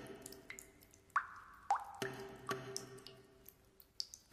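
Quiet water drops falling one by one into water, a few soft plinks. The two clearest come about a second in and shortly after, each with a quick upward-gliding pitch. A faint held note sounds underneath.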